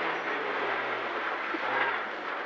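Renault Clio N3 rally car heard from inside the cabin while driving: a low engine note that drifts slightly down, under a steady rush of tyre and road noise.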